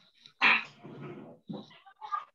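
A dog barking, coming through the audio of an online video call.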